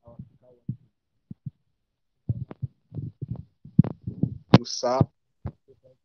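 Choppy, broken-up speech over a video call, cutting in and out in short fragments with gaps of dead silence, and a brief hiss about four and a half seconds in: a participant's call audio is breaking up so badly that the voice is unintelligible.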